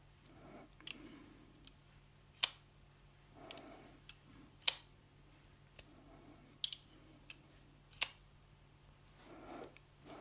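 Fura Gear folding knife with a titanium handle clicking as it is worked in the hands: about nine sharp, short metallic clicks of the blade and its sidelock at uneven intervals, the loudest two about two and a half and four and a half seconds in, with soft handling rustles between.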